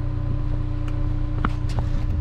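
Wind buffeting the camera microphone as a steady low rumble, with a faint steady hum underneath. A few sharp clicks come in the second half.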